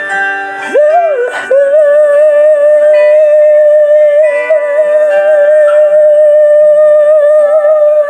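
A singing voice rises into one long held 'woooh' note about a second in and sustains it with a slight vibrato, over a ballad backing track with guitar and held chords.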